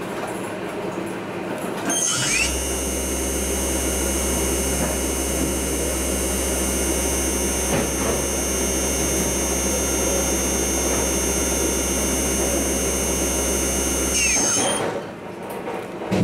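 Okuma spindle motor driven by a VAC-Drive Unit A on a test bench. About two seconds in, a whine rises in pitch as the motor speeds up, then holds as a steady high-pitched whine over a low hum. Near the end it falls in pitch as the motor slows. This is a test run of the drive unit.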